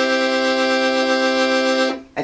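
Hohner piano accordion holding a block chord on a single reed set, with a slight shimmer. A light, nervous tremor of the bellows makes the whole chord waver. The chord cuts off near the end.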